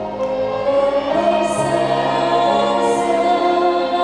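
A student string orchestra accompanying a small group of singers in an orchestral arrangement of an Indonesian pop song, voices and strings holding long notes together.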